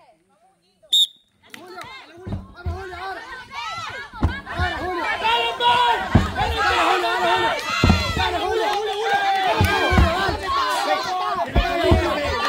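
A short whistle blast about a second in starts a tyre-flipping race. Then a crowd of voices shouts and cheers without a break, with a dull thud about every two seconds as the heavy tractor tyres slam onto the dirt.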